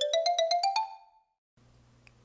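Short jingle: a quick run of about eight notes climbing in pitch, stopping about a second in.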